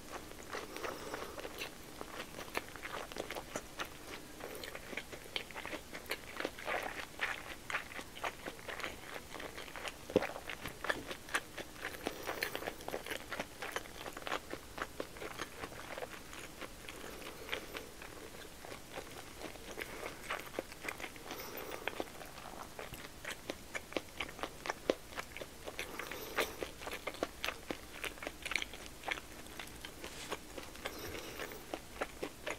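Close-miked chewing of a large mouthful of pork-belly-wrapped rice ball (nikumaki onigiri): a steady run of short mouth clicks as the bite is chewed.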